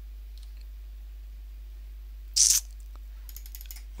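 Faint computer keyboard and mouse clicks over a steady low electrical hum, with one short, loud hiss about halfway through.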